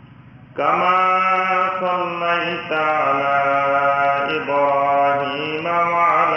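A man's voice chanting in long, held melodic notes that step from pitch to pitch, starting about half a second in after a short pause.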